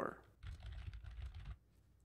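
Computer keyboard typing for about a second, soft and patchy, then it stops.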